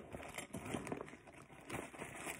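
Faint rustling and fine clicking of a nylon tactical backpack's front pouch being handled and unzipped.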